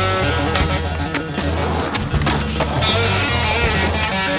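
Music soundtrack with sustained notes and a steady bass. Skateboard sounds, wheels rolling on pavement and the board knocking, are mixed in underneath.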